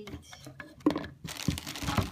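Plastic bags and paper packing in a cardboard shipping box being handled, crinkling and rustling, with a sharp knock just under a second in and the crinkling thickening near the end.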